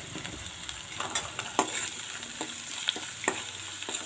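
Chopped onions sizzling in hot oil in a stainless steel pan while a steel ladle stirs them, with a few sharp clicks of the ladle against the pan.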